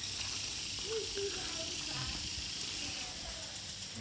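Automatic garden sprinklers spraying water: a steady hiss.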